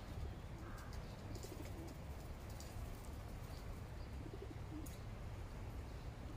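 A pigeon cooing softly a couple of times over a steady low outdoor rumble, with a short higher bird call near the start.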